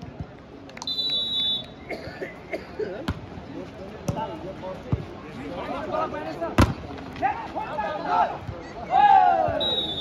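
Referee's whistle blown briefly about a second in, then a volleyball struck several times during the rally, the sharpest smack about two-thirds of the way through, over crowd shouting; a second short whistle near the end.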